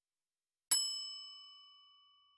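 A single bell-like chime, struck once about a third of the way in, rings with a clear tone and fades away over about a second. It marks the end of a passage before the questions are read.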